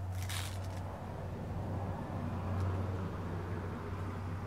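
A brief rustle from hands handling a small quadcopter frame near the start, over a steady low hum.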